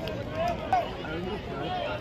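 Voices of nearby spectators talking in the stands, over a low background of crowd chatter.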